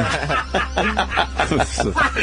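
Men snickering and chuckling in quick bursts, mixed with a few spoken sounds, over a low steady hum.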